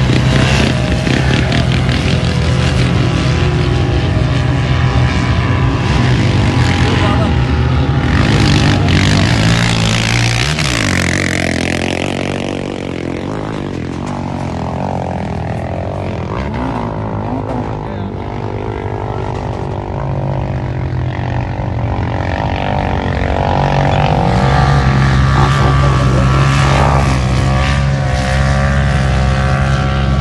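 Off-road SUV engines running hard as they climb a sand dune, with one vehicle passing close by, its pitch sweeping, about ten seconds in, and people's voices mixed in.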